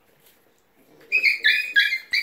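Puppies whining: after a quiet first second, about four short, high-pitched whines in quick succession.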